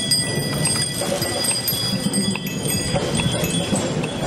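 Many bicycle bells ringing over and over from a large group of passing cyclists, several bells sounding at once.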